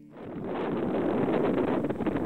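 Wind buffeting a small camera microphone: a rough, crackly rush that comes up a moment in, just after the music's last note fades, and then holds steady.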